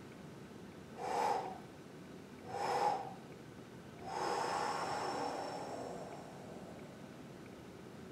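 A man breathing audibly during a paced deep-breathing exercise: two short breaths about a second and a half apart, then a longer, slower one lasting about two and a half seconds.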